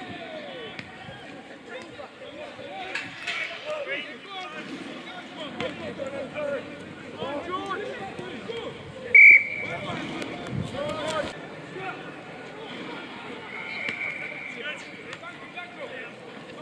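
Rugby referee's whistle: one loud, short blast about nine seconds in, then a fainter, longer blast near the end, over the shouts of players and spectators.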